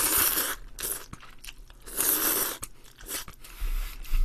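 Close-miked eating of cream-sauce tteokbokki: a loud hissing slurp as a strand of rice cake is drawn in at the start, a second similar noisy mouth sound about two seconds in, and chewing with small mouth clicks between.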